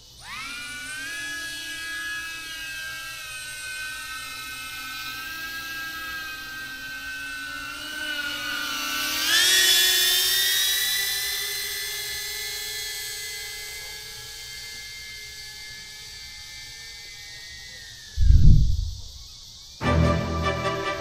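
DJI Avata FPV drone's motors and propellers spinning up for take-off with a high, whining hum. The pitch and loudness rise sharply about halfway through as it climbs, then the whine holds and slowly fades. A brief loud low thud comes near the end.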